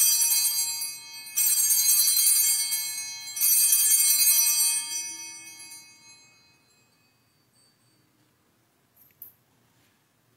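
Altar bells rung three times at the elevation of the chalice, the signal of the consecration. Each bright, high peal fades out: the first is already sounding at the start, the next two come about a second and a half and three and a half seconds in, and the last dies away around six seconds in.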